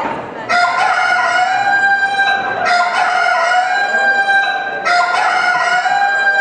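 A rooster crowing three times in a row, each crow a long, held call of about two seconds.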